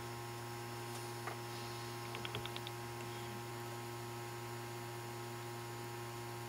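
Steady electrical hum made of several constant tones. A quick run of about six faint ticks comes a little over two seconds in.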